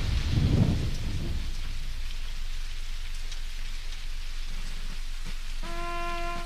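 Rain and thunder sound effect: a low thunder rumble dies away in the first second, leaving steady rain. About half a second before the end, held musical notes come in over the rain.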